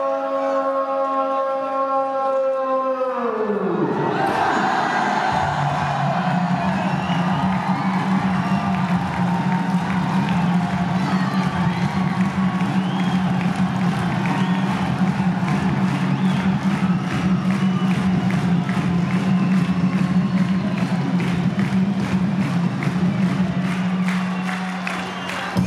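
Music played through loudspeakers over a large cheering crowd. A held note slides down in pitch and ends about three seconds in. Then music with a steady low drone and a regular beat starts, and the crowd cheers along.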